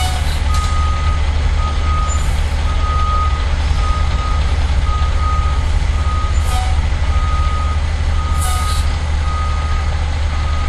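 Fire truck backup alarm beeping, just over one beep a second, over the steady low running of an idling diesel fire engine, with a few short hisses.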